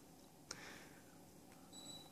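Near silence, with one faint click about half a second in as a button on the mini-split remote control is pressed, and a faint short high beep near the end.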